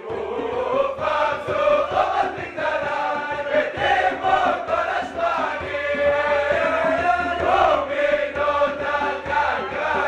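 A group of men singing a chant-like song together in unison, many voices loud and continuous.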